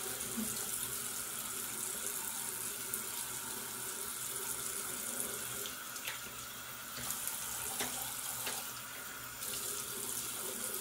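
Bathroom sink tap running steadily while a face mask is rinsed off by hand, with a few short clicks in the second half.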